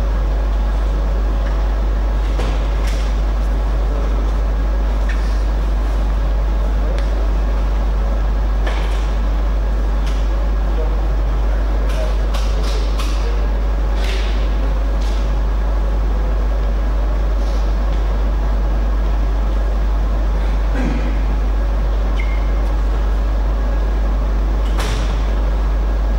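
A steady low hum throughout, with scattered short clicks and knocks.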